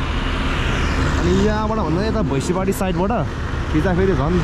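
Steady road-traffic rumble and hiss from a busy multi-lane road, with a person's voice talking over it from about a second and a half in.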